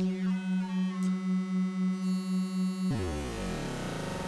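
Synthesizer tone played through a comb filter, holding one steady pitch and pulsing evenly in level. A little before three seconds in, the comb filter's frequency is swept down to about 40 Hz: its resonant peaks slide down in pitch and the tone turns buzzier and denser.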